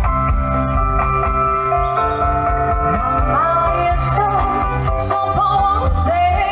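Live band music played through PA speakers, with a strong bass and held chords, and a voice singing a melody from about three seconds in.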